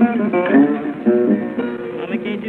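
Solo acoustic blues guitar played bottleneck slide, gliding notes answering the last sung line. It is heard through an old recording with a thin, narrow sound.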